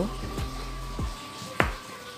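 A few light knocks of a wooden-handled silicone spatula as it is handled and set down, the sharpest about one and a half seconds in. Soft background music runs underneath.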